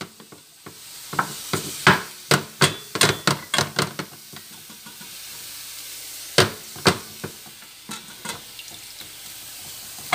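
A wooden spatula scraping and tapping against a nonstick frying pan as cooked rice is stir-fried, over a soft steady sizzle. The strokes come quick and close for the first few seconds, then pause, with a couple of sharp taps about six and a half seconds in and a few lighter ones after.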